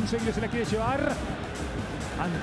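Background music mixed with a man's voice from the match broadcast commentary, fainter than the louder electronic music just before.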